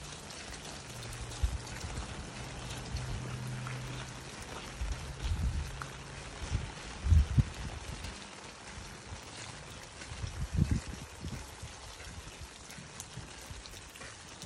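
Steady patter of light rain, with a low hum through the first half and several low thumps.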